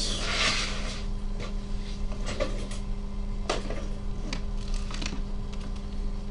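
Scattered light clicks and taps at irregular intervals, over a steady low hum.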